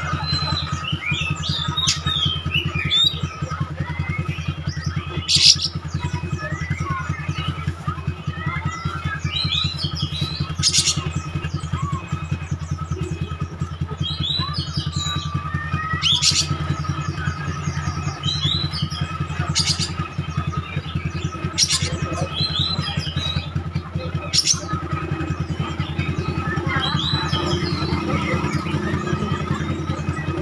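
Oriental magpie-robin singing in bursts of varied whistled phrases, with a sharp loud note every few seconds, over a steady low hum.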